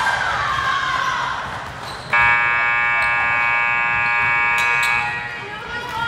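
Gym scoreboard horn sounding one steady, even-pitched blast of about three seconds, starting about two seconds in, with voices in the hall before it.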